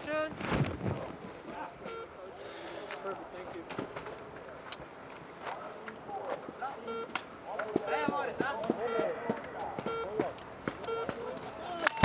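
Voices of people at a ski race course talking and calling out, with short, evenly pitched beeps repeating through.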